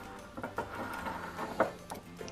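A glass mason jar with a metal screw lid being handled on a tiled countertop: a few light clicks and knocks from the lid and glass, over faint background music.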